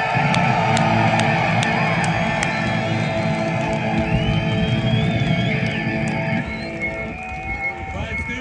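Electric guitar played loud through a Marshall amp stack: a held, sustained chord ringing out with a bent note in the middle, fading over the last couple of seconds.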